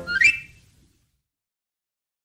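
A short whistled run rising quickly in pitch as the closing flourish of a 1920s hot jazz record, over the fading final band chord; the recording ends within the first second.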